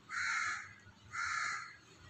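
A bird calling twice, two harsh calls each about half a second long, a second apart.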